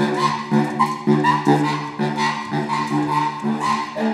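Baritone saxophone playing a run of short, detached low notes, about two a second.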